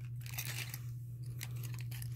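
Soft, scattered clicks and crinkles of earrings on their card backings being handled and sorted, over a low steady hum.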